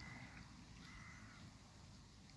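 Two faint, short animal calls, the first at the very start and the second about a second in, each held at one pitch.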